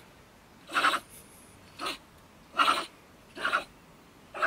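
Stone marten (beech marten) giving four short, harsh scolding calls about a second apart, the third the longest and loudest: agitated threat calls at an intruder close to its den.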